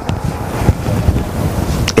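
Loud rustling and wind-like rumble on the preacher's body-worn microphone, the kind of noise a clip-on mic picks up as the wearer moves.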